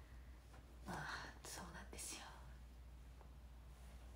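A young woman whispering a few words under her breath about a second in, over a faint steady low hum.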